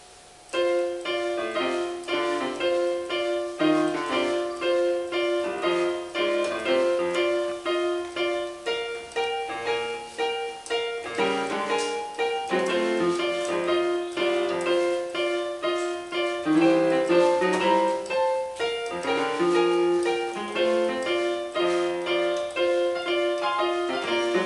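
Portable electronic keyboard on a piano voice played four hands by two players: a blues with a steady beat of repeated chords and a moving melody, starting about half a second in.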